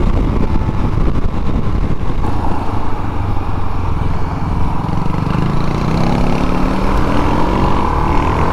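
Suzuki DR-Z400SM's single-cylinder four-stroke engine running under way, with wind buffeting the helmet microphone. From about halfway through, the engine note rises steadily as the bike accelerates.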